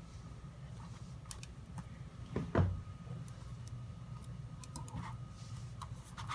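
Quiet handling noises over a steady low hum: a few light clicks and one soft thump about two and a half seconds in.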